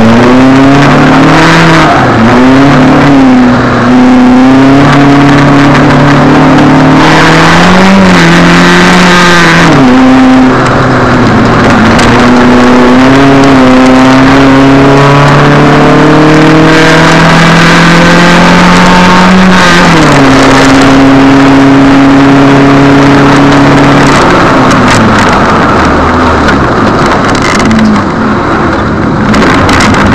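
Proton Satria Neo's four-cylinder engine heard from inside the cabin under hard track driving, revving up through the gears and dropping sharply on lifts and downshifts, with one long climb in revs before a sudden fall about two-thirds of the way through. The driver says the engine has worn spark plugs and a heavy spark-knock problem.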